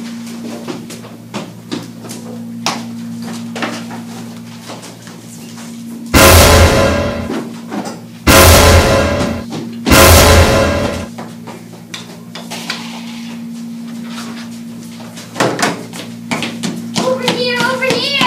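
Three loud, heavy blows, about two seconds apart, each ringing on for about a second: the hammer strikes of a tent peg being driven in a staged killing.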